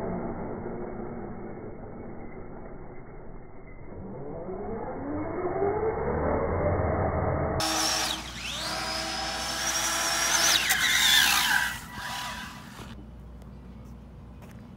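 Brushless electric motor of an Arrma Infraction RC car on an 8S system, whining up in pitch as it accelerates hard and spins its tires on asphalt. A second, louder and higher whine then climbs, holds for a couple of seconds and drops away about twelve seconds in.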